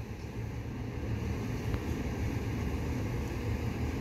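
Steady low outdoor rumble with no distinct events, the kind of ambient noise heard at a waterfront construction site.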